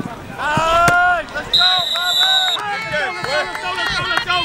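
Football players and sideline voices shouting and cheering as a pass is completed for a touchdown, with one long held shout about half a second in. A steady high whistle sounds for about a second in the middle.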